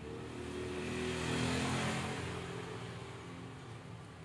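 A motor vehicle driving past, its engine sound swelling to a peak near the middle and then fading away.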